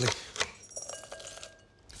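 A sharp knock about half a second in, then light clinks and a faint ring as chopped dark chocolate pieces drop into a ceramic bowl, fading toward the end.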